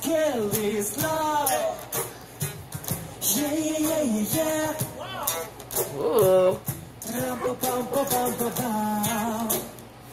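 Male voices singing a song with acoustic guitar accompaniment.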